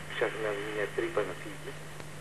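Speech only: a man talking in Greek over a telephone line for about a second, then a pause. A steady low hum runs underneath.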